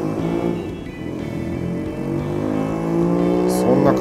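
A motor vehicle's engine accelerating, its pitch rising slowly and its level building over a few seconds.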